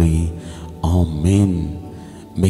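A man's voice intoning two long, drawn-out syllables in prayer, over soft background music.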